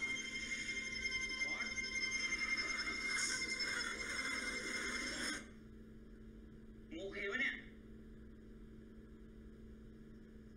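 Episode soundtrack of held, droning tones that cuts off suddenly a little past halfway. A short voice follows about two seconds later, then only a steady low hum.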